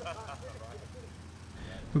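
Quiet street ambience: a steady low hum of traffic, with faint indistinct sounds over it and the start of a man's speech at the very end.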